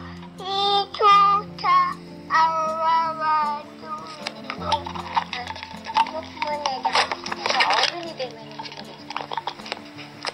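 Soft background music under a small child's high voice, calling out in a few short bursts over the first four seconds. Then come clinking and rattling like dishes and cutlery.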